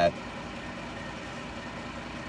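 Semi truck's diesel engine idling, a steady low hum heard from inside the sleeper cab.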